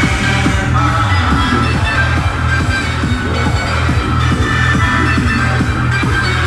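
Loud electronic dance music with heavy bass and a fast, steady kick-drum beat, played through a large DJ sound system.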